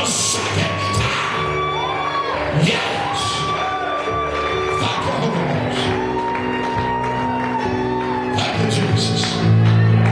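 Live church worship music: long held keyboard chords, with voices singing and calling out over them in wavering lines.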